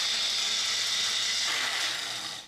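Bullet-style personal blender motor running at a steady high whine, held down to blend soaked cashews and water into a thick cashew cream.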